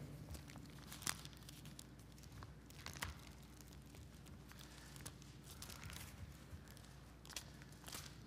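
Faint rustling of a congregation's Bibles as pages are turned, with scattered soft clicks and taps over a low steady room hum.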